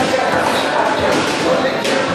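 Indistinct chatter of many voices filling a large, echoing gym hall, with a brief knock near the end.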